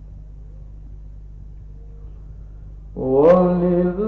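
A low steady hum, then about three seconds in a man's voice begins Quran recitation, sliding up into a long, melodic held note.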